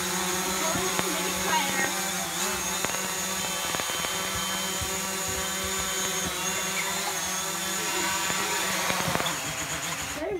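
DJI Mavic Pro quadcopter hovering close by, its propellers giving a steady buzzing whine whose pitch wavers slightly as the motors hold it in place. It winds down at the very end as the drone lands and the motors stop.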